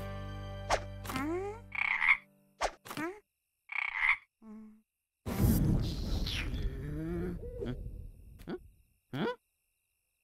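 Frog croaking in a string of short separate calls, with a longer rough croaking stretch in the middle, as a cartoon sound effect. Background music fades out in the first couple of seconds.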